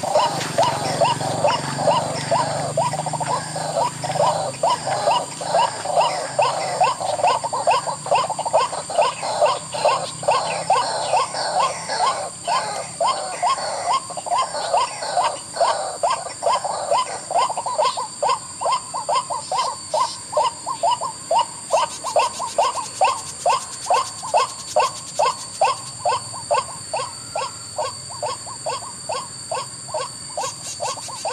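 White-breasted waterhen calls played from a bird-trapping lure speaker: a monotonous series of notes repeated about three times a second, with a steady high-pitched tone behind it.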